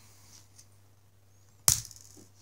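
A single sharp plastic crack near the end as the inlet nozzle of a LEGO pneumatic cylinder snaps under finger pressure, breaking the cylinder.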